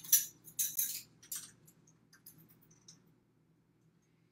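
Measuring spoon scraping and clinking as ground pumpkin spice is scooped from a small jar and tipped into a glass mixing bowl: a few quick scrapes and clinks in the first second and a half, then a few faint ticks.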